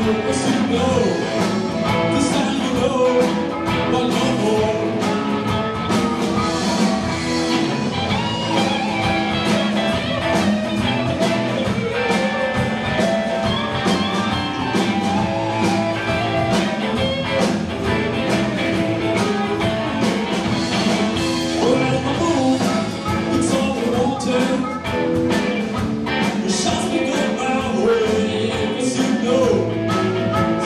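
Live blues band playing: electric guitars and a drum kit, with a lead line at the microphone.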